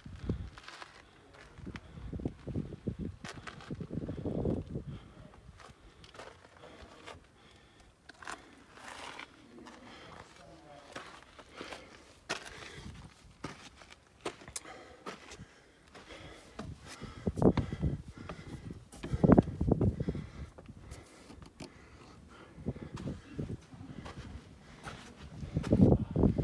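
Footsteps and knocks of a person climbing wooden ladders and rock steps, with scattered sharp clicks and several bursts of low noise, loudest about two-thirds of the way through.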